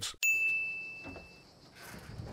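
A single bright ding, the CinemaSins sin-counter chime, starts sharply and rings away over about a second. Near the end a faint creak comes in as a train door is pushed open.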